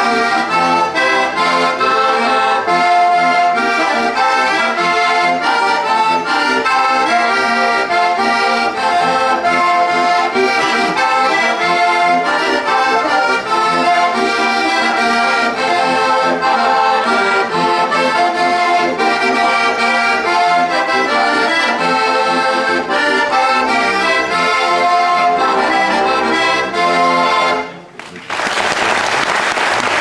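Heligónka, a Slovak diatonic button accordion, playing a lively folk tune solo with quickly changing notes. Near the end the tune stops sharply and audience applause follows.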